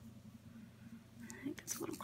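Quiet room tone with a faint steady low hum, then soft, half-whispered speech starting a little past the halfway point.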